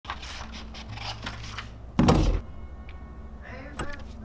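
Scissors cutting paper in a run of quick snips, then a single thump about two seconds in, the loudest sound.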